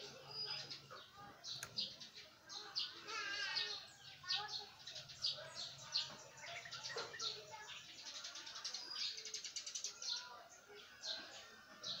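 Small birds chirping and twittering continuously, in rapid overlapping calls, over a faint low hum.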